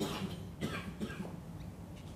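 A few faint coughs and small rustles from a large seated audience during a silent pause, over a low steady room hum.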